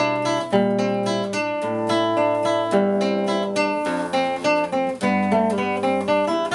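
Nylon-string classical guitar played fingerstyle: an instrumental passage of plucked melody notes, several a second, ringing over held bass notes.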